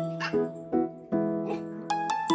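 Chihuahua giving a short, high yap about a quarter second in, over background music with a plucked, steady beat.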